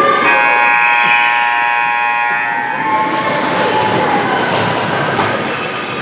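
Ice-rink scoreboard horn sounding one long steady blast of about two and a half seconds, echoing around the arena, then fading.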